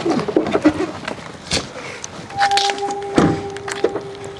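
A dove cooing while a pickup truck's door is shut with a thud about three seconds in, with another sharp knock about halfway through. A steady held tone runs through the second half.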